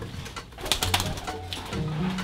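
A pigeon cooing over soft background music, with a short flurry of wing flaps and rustling a little under a second in.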